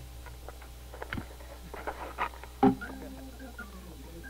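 Between-song studio noise: scattered clicks and knocks from musicians handling instruments and gear, the loudest a sharp knock a little past halfway, followed by a brief low held tone.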